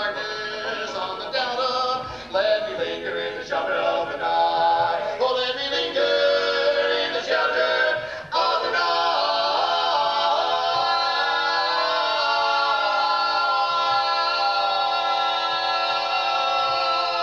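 Barbershop quartet of four men singing a cappella in close four-part harmony, with short shifting phrases and then, from about eight seconds in, one long held chord.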